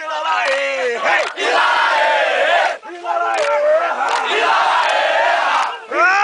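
A group of Brazilian Army soldiers chanting a military cadence song in unison, many male voices shouting the lines together, with a short break about three seconds in and a long held note starting at the very end.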